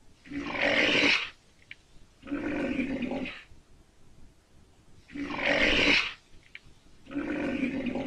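Recorded rhinoceros calls: four harsh calls of about a second each, in a pattern heard twice, a louder breathy call followed by a quieter, lower one.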